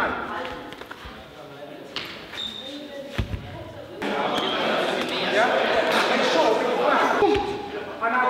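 Indistinct voices of several people talking in a large, echoing sports hall, with a couple of dull thuds about two and three seconds in.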